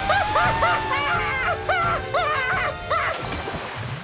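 Cartoon woodpecker yelping in pain over and over, about three short cries a second, as his head burns, over loud comic background music; the cries and music stop sharply about three seconds in.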